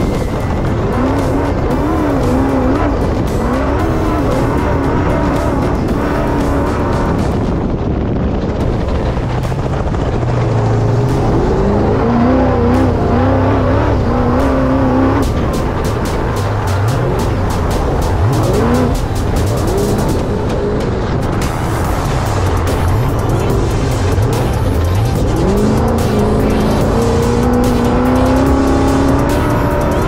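Trophy Bug desert race car's engine under hard throttle, its pitch climbing and dropping again and again through the gears, over a heavy rumble of wind and tyres on rough dirt, with scattered short clicks.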